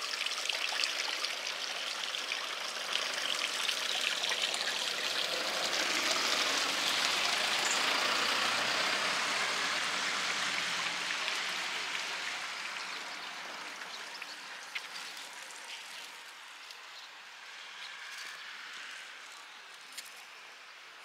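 Water trickling and splashing at a small wooden water wheel, a steady rush that is loudest around the middle and fades toward the end.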